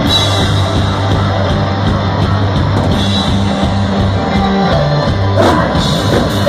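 Live rock band playing loud: electric guitar and drum kit over held low bass notes, with a sudden loud hit about five and a half seconds in.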